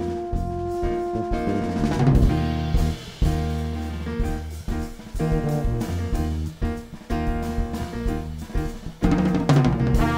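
A jazz septet playing live. Held horn notes give way about a second and a half in to a drum crash and a groove of drum kit, bass and chords, and the horns come back in near the end.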